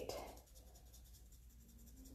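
Near silence, with faint scratchy strokes of a makeup brush rubbing powder contour into the skin at the hairline.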